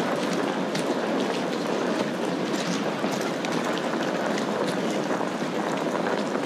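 Steady outdoor street noise, a continuous hiss scattered with faint light ticks and clicks.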